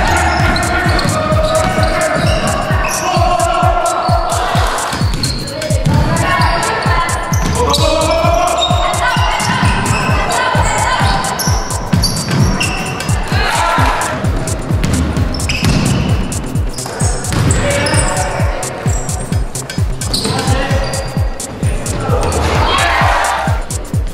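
Background music with a fast, steady beat and bass, and a melody line over it.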